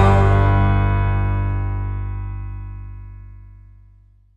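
The last chord of the soundtrack music held and ringing out, fading steadily from loud to almost nothing over about four seconds, its higher notes dying first.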